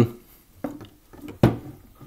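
Handling knocks as an Adderini pistol crossbow is moved on a table: a light click a third of the way in, then a sharper knock about three-quarters of the way through.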